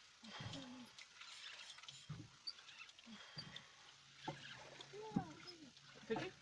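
Faint, broken snatches of people talking, with a single sharp knock about five seconds in.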